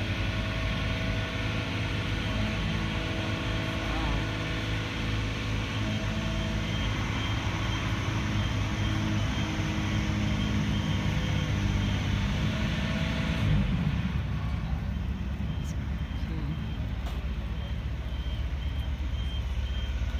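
Construction-site machinery engine running steadily in a low rumble. From about two-thirds of the way in, an alarm beeps repeatedly at a high pitch, like the motion or reversing alarm of site plant.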